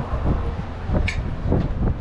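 Wind buffeting the microphone, a steady low rumble, with a few light clinks of forks on plates about a second in and again near the end.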